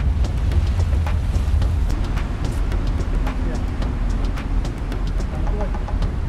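Steady low rumble aboard a moving river boat, with scattered sharp clicks and faint background voices.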